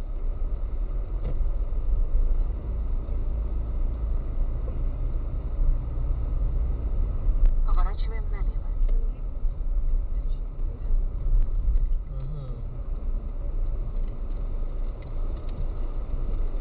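Steady low rumble of a car's engine and tyres heard inside the cabin while driving. A short stretch of muffled voice comes through about halfway.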